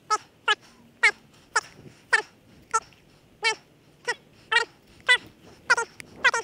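An animal's short, high-pitched calls repeated evenly about twice a second, a dozen in all.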